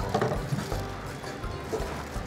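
Kitchen shears cutting through a cooked mud crab's shell to split it in half: a few irregular sharp snaps and crunches.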